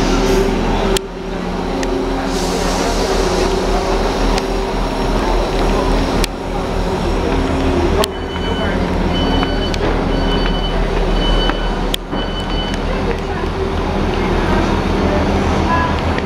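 Class 158 diesel multiple unit idling at the platform, a steady low engine drone. A high beeper sounds about five times in a row around the middle, typical of the unit's door warning. Platform chatter and a few sharp clicks are mixed in.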